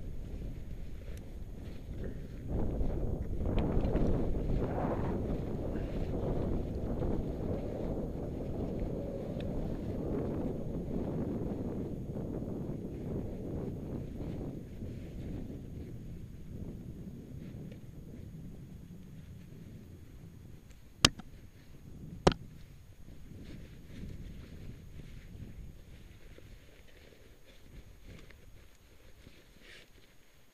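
Low, rumbling rustle of clothing and gear rubbing against the microphone, loudest in the first half and fading slowly. Two sharp clicks about a second apart come about two-thirds of the way through.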